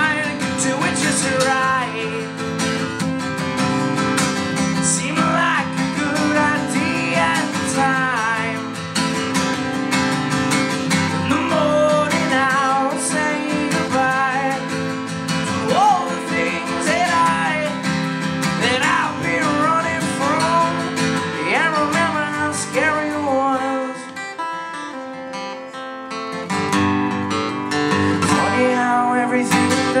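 Solo acoustic guitar strummed hard with a male voice singing a punk song. The playing drops to a quieter passage a few seconds before the end, then comes back in full.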